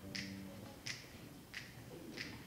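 Faint finger snaps, evenly spaced, about three every two seconds, keeping a steady tempo before a jazz big band comes in: a snapped count-off.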